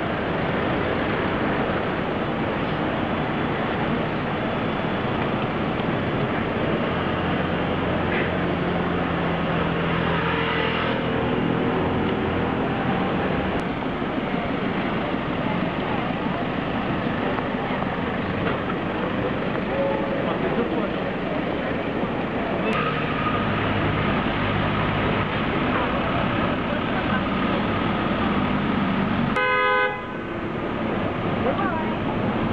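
Steady city street traffic noise, with vehicle engines passing, and a short car horn toot just before the end.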